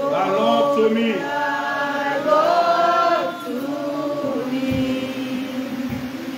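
A church congregation singing together, many voices on long held notes that slide gently between pitches.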